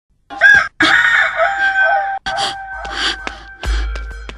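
A rooster crowing: a short call, then one long drawn-out crow, then further shorter calls. A deep bass beat comes in near the end.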